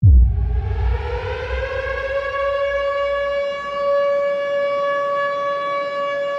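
Air-raid siren winding up, its pitch rising over the first two seconds and then holding a steady wail, opened by a low boom.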